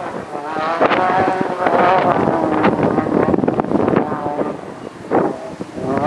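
Off-road race truck engine revving hard under load as it climbs a dirt hill, its pitch rising and falling. Wind buffets the microphone.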